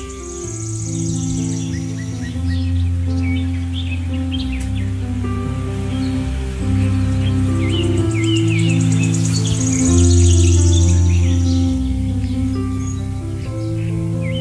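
Slow instrumental background music of held chords that change every second or two, with birdsong chirps mixed in and twice a high rapid trill.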